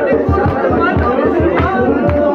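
Male voice singing a Shina folk song live over a steady drum beat, about four beats a second, with other voices of the gathering mixed in.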